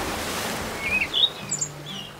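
Birds chirping in short, quick calls that slide up and down in pitch, starting about a second in, over a steady outdoor noise bed; a brief rush of noise fades at the start.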